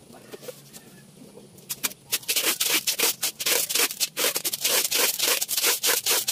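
Quick back-and-forth rubbing on the tube of a homemade tin-can cannon, about five strokes a second, starting about two seconds in.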